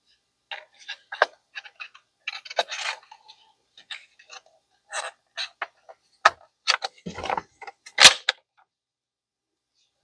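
Cheekpiece of an ATI Bulldog 12-gauge bullpup shotgun being fitted back onto the stock by hand: a series of short clicks and scrapes of the parts meeting, with two sharper knocks, about six and eight seconds in.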